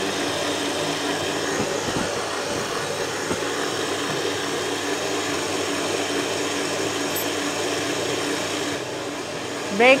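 Steady whir of a small electric motor running continuously at an even level.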